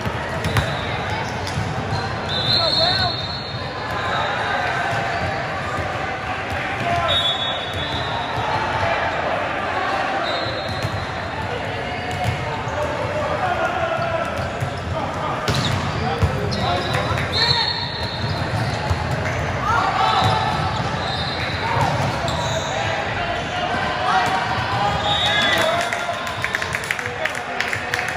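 Volleyball gym ambience in a large echoing hall: overlapping voices and calls, repeated thuds of balls hitting the court floor, and several short high-pitched squeals scattered through.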